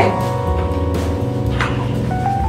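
Background music: sustained instrumental notes over a steady bass line.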